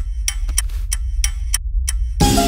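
Wristwatch ticking as a film sound effect: a run of sharp clicks, about five a second and slightly uneven, over a steady low rumble.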